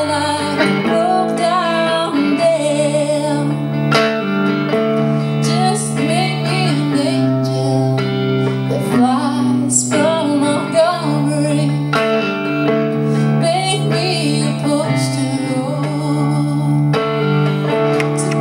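A woman singing a slow song, accompanying herself on a semi-hollow-body electric guitar.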